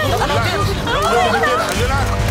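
Several voices talking over one another in a babble, with background music underneath.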